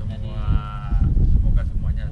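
A man's voice holding one long drawn-out sound on a steady pitch for about a second and a half.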